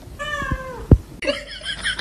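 A kitten meows once, a drawn-out call falling in pitch. A sharp knock follows about a second in and is the loudest sound, then comes a short, rough, noisy stretch.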